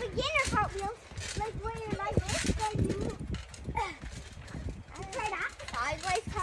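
High-pitched children's voices talking, with soft footfalls and thuds on a trampoline mat.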